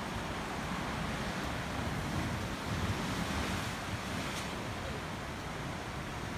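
Steady wash of ocean surf on the rocky shore below, with wind gusting on the microphone.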